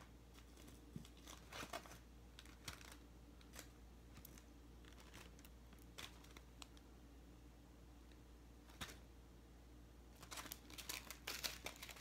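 Near silence with faint scattered clicks and rustles, like small objects being handled, coming more often near the end.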